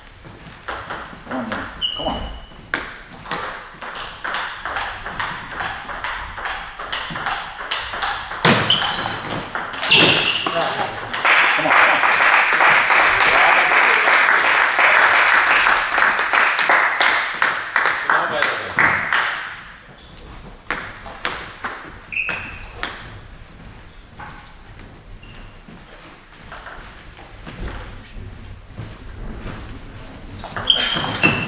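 Table tennis ball pinging off the table and bats amid scattered clapping. About ten seconds in, spectators break into loud applause and shouts that last about eight seconds, then die down to single ball bounces as play resumes.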